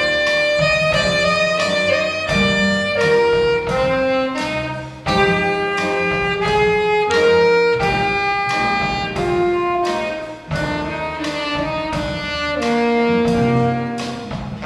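School jazz band playing, with an alto saxophone carrying a sustained melody over piano, bass and drum kit.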